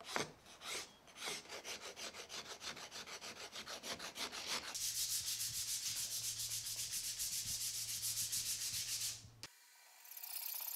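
Rasp strokes along a curly teak hammer handle, several a second. About five seconds in, these give way to quicker, brighter back-and-forth rubbing of sandpaper on the wood, which stops suddenly shortly before the end.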